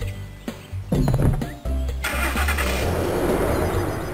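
A car engine starting about two seconds in, then running with a loud, noisy rush, over background music.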